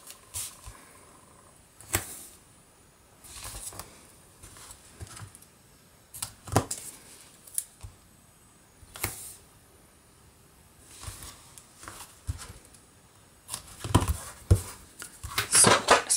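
Double-sided adhesive tape being pulled from its roll and laid along a cardstock panel, with the paper being handled. The sound is a scattering of short scrapes and taps with quiet gaps between them, and it gets busier near the end.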